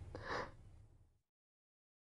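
A man's single short, breathy gasp just after the start.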